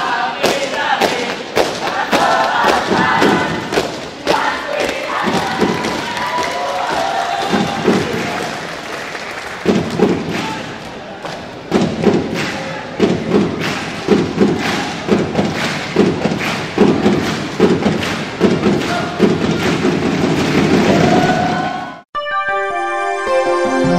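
A scout troop shouting a group yell chant, mixed with many sharp thumps. From about halfway the thumps settle into a beat of roughly two a second over the noise of a crowd in a reverberant hall.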